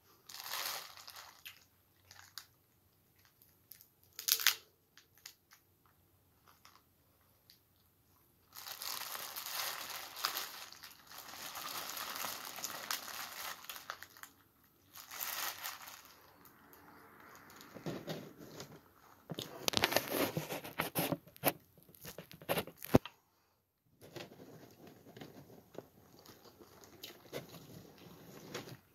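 Plastic seafood-boil bag crinkling and rustling in long stretches as hands dig through snow crab legs, corn and potatoes, with several sharp cracks and snaps of crab shell.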